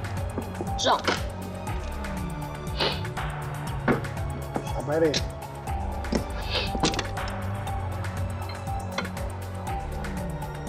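Mahjong tiles clacking as they are drawn and discarded onto the table, a sharp clack every second or two, over steady background music.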